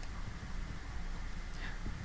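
Steady low hum and faint hiss of microphone background noise in a small room, with no distinct event.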